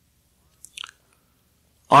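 Near silence in a pause of speech, broken about two-thirds of a second in by a brief mouth noise from the speaker. A man's voice starts speaking near the end.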